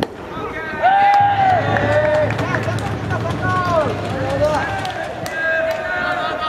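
A sharp pop at the start, fitting a pitched ball landing in the catcher's mitt. From about a second in, several voices shout long, drawn-out calls across the ballpark.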